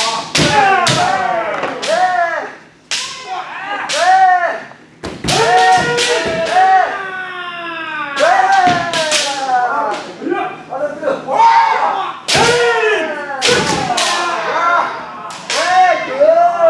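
Kendo sparring: several fencers' kiai shouts, each rising and falling in pitch, overlapping in quick succession with sharp cracks of bamboo shinai striking armour and thuds of stamping feet on the floor.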